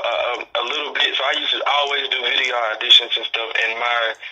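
Speech only: a person talking steadily.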